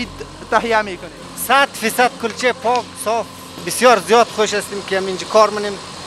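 Speech: a person talking steadily, with a low, steady machine hum beneath the voice.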